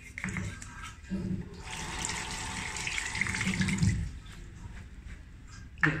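Water from a bathroom tap running and splashing into a sink as a small plastic part is rinsed and scrubbed with a bristle brush under it; the running water stops about four seconds in.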